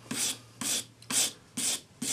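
Sanding stick with 400-grit paper scrubbed back and forth over the soldered join of a silver ring, four short strokes at about two a second, cleaning the solder seam back.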